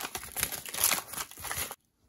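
Yellow padded paper envelope being torn open and crumpled by hand: a dense, crackly rustle of paper that cuts off suddenly near the end.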